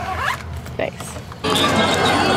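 A zipper on a long padded fabric can-carrier sleeve being pulled in a few short rasps. About one and a half seconds in it cuts to crowd voices and music.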